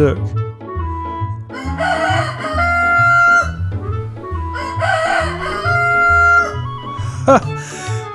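A rooster crowing twice, each crow about a second and a half long, over background music with a pulsing bass line.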